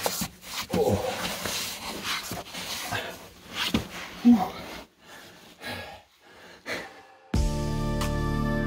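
Clothing rubbing and scraping against sandstone walls, with panting breath and a short grunt about four seconds in, as a hiker squeezes sideways through a narrow slot canyon. Acoustic guitar music starts suddenly near the end.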